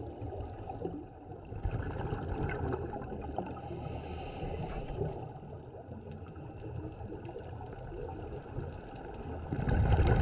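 Underwater sound of scuba breathing through a regulator, heard over a steady watery rumble with scattered crackling clicks. A hiss of inhalation comes about four seconds in, and a loud rush of exhaled bubbles comes near the end.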